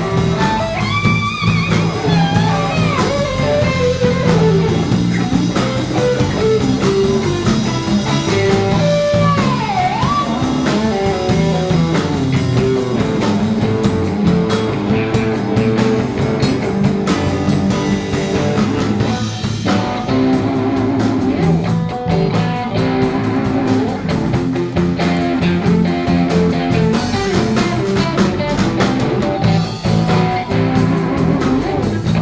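Live blues-rock band playing an instrumental passage: electric guitars over bass guitar and drum kit. A lead guitar line bends notes up and down near the start and again about ten seconds in.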